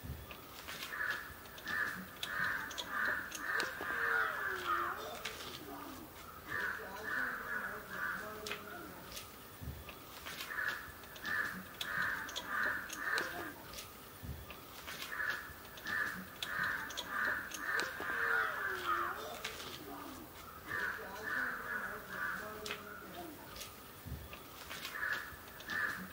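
Crows cawing in repeated runs of short, evenly spaced calls, a few caws a second, with short pauses between the runs.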